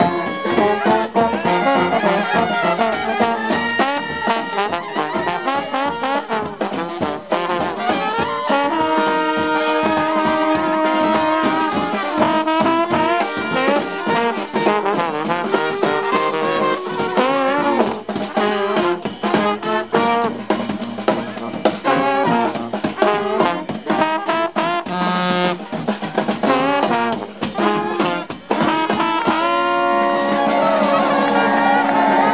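A brass band playing live, the trombones loudest and close by, with trumpets, a sousaphone and frequent drum hits.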